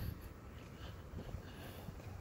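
Quiet outdoor background with faint low rumble and a few soft footsteps on an asphalt path.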